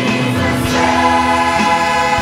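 Church choir singing a gospel song with a soloist on microphone, voices holding long sustained notes.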